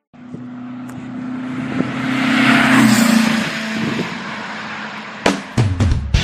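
A motor vehicle passing by: a steady engine note and road noise swell to a peak about halfway through. As it goes past, the engine note drops slightly in pitch and fades. A few sharp clicks come near the end.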